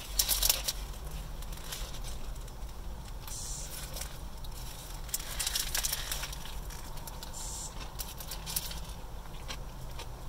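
A sandwich being eaten out of a paper wrapper: bites and chewing, with short crackling bursts of wrapper rustle every second or two.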